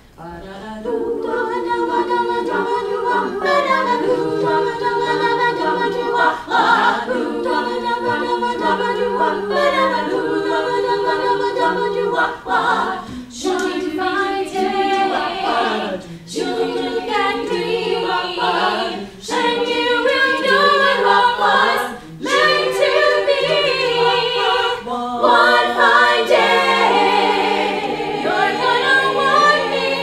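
Women's a cappella ensemble singing in several-part harmony, entering together about a second in, with short breaks between phrases.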